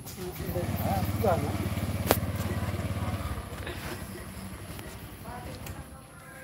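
A motorcycle engine runs close by with a low, rapid putter for about three seconds, then fades away. A single sharp click sounds about two seconds in.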